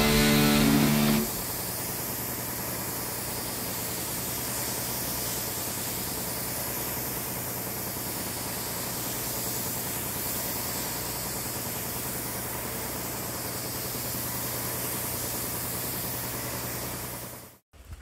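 Compressed-air paint spray gun hissing steadily as single-stage paint is sprayed, over a steady low hum. Background music stops about a second in, and the hiss cuts off abruptly near the end.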